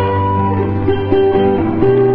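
Live rock band playing an instrumental passage, guitars to the fore: a stepping melody of held notes over sustained bass notes, with drums and keyboard behind.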